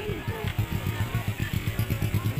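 An engine idling with a low, rapid throb, under music and people talking.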